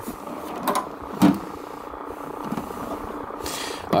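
Specimen cabinet drawers being handled as one drawer is left and another opened: two light knocks a little after the start, then a short sliding rush near the end.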